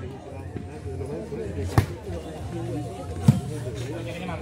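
Two sharp smacks of an ecuavoley ball being hit or bounced, about a second and a half apart, the second louder, over low crowd chatter.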